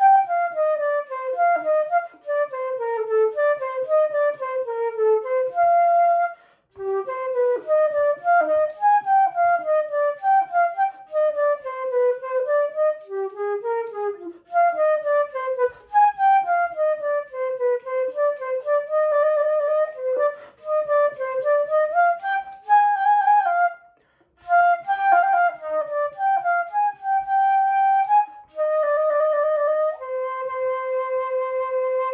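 Unaccompanied concert flute playing fast running passages of notes that sweep up and down, with two short breaks for breath, about six and a half and twenty-four seconds in, and longer held notes near the end.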